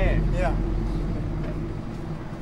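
A deep low rumble fading slowly and steadily, the tail of a sudden boom struck just before. A voice speaks briefly at the start.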